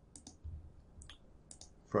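A computer mouse clicking several times in quick pairs.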